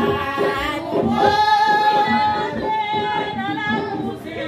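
Group of women singing a Haitian Vodou song in unison, holding long sung notes, over a steady rapid percussion beat.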